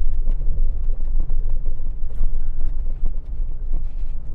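Pickup truck rolling slowly on a gravel road, heard from inside the cab: a steady low rumble of engine and tyres, with scattered small clicks and rattles.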